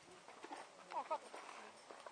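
Faint background murmur of distant voices, with a short pair of pitched animal calls about a second in.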